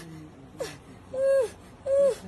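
An injured boy moaning in pain: three short moans that rise and fall in pitch, the second and third the loudest.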